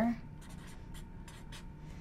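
Pen writing on paper: a series of short, faint scratching strokes as an equation is written out.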